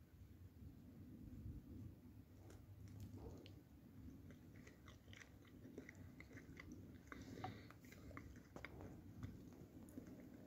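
A person faintly chewing a bite of ripe fresh fig, with small soft clicks scattered through the chewing.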